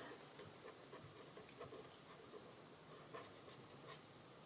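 Near silence, with faint scratching of a felt-tip marker colouring on cardstock.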